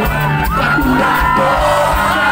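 Live rock band playing loud, with electric guitars, bass, drums and a sung vocal line, and fans shouting and cheering over it.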